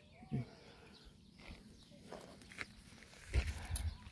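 A goat bleats once, briefly, just after the start. Low bumps follow near the end.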